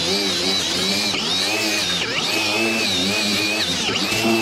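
Angle grinder with a hard steel wire cup brush running against a metal roof seam, scrubbing off old silicone sealant so new sealant can adhere. A steady high motor whine that dips briefly in pitch a few times.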